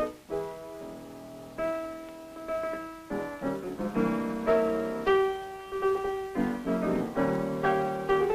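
Background film-score music played on piano, moving between held chords and quick runs of notes.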